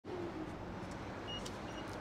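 Steady, fairly quiet outdoor background noise with a low hum of distant road traffic. Two brief, faint high chirps come in the second half.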